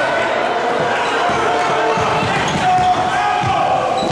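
Basketball dribbled on a hardwood gym floor, a few bounces in the second half, with short sneaker squeaks, over steady crowd chatter and shouting in the gym.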